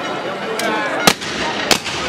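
Shotgun blasts fired at a hanging effigy: two sharp, loud shots about two-thirds of a second apart, the first the louder, after a fainter crack. Crowd chatter runs underneath.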